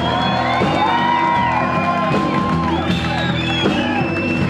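Live blues-rock band playing, with a high lead line of long held notes that slide and bend in pitch over steady bass and drums.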